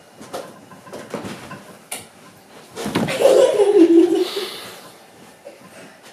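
A child laughing loudly for about a second and a half near the middle, after a few soft knocks and thuds.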